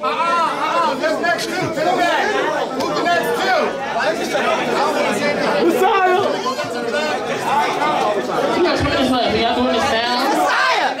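Crowd chatter: many people talking over one another at once, no single voice standing out.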